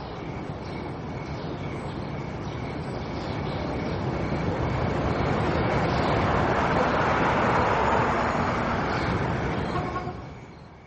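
A rushing noise that slowly swells, loudest about three-quarters of the way through, then begins to fade at the end.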